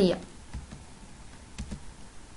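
A few faint computer clicks, one group about half a second in and another around a second and a half in, after a voice trails off at the very start.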